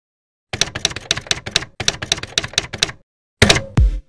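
Typing sound effect: rapid keystroke clicks in two runs of about a second each. Near the end, electronic music starts with a heavy bass hit.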